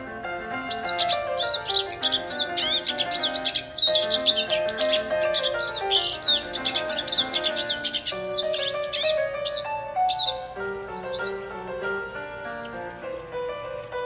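Rapid, high bird chirps and twitters, thick from about a second in and thinning out until they stop about eleven seconds in, over background music.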